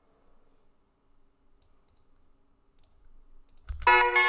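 Faint, scattered computer-mouse clicks over near silence, then near the end a synth-melody electronic beat starts playing with a low bass thump.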